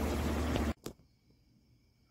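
Steady background noise with a low hum, which cuts off abruptly under a second in, leaving near silence broken by a single faint click.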